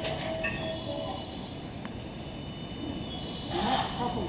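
JR West 321 series electric multiple unit rolling slowly to a stop at the platform, a low rumble with faint steady high whining tones. Near the end comes a short, loud hiss of air as it halts.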